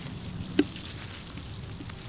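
Liquid soil-drench solution poured from a jug onto mulch at the base of a tree, a faint patter over a low steady rumble, with one sharp click about halfway through.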